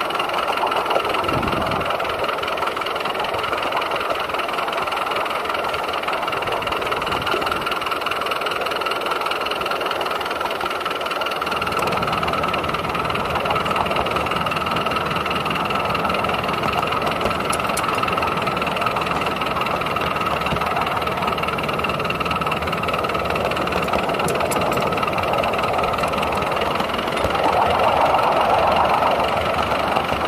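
7¼-inch gauge live steam 0-4-0 dock tank locomotive, a Southampton Docks shunter, running along the track under steam, heard close up from just behind its cab: a steady running noise that grows louder for a couple of seconds near the end.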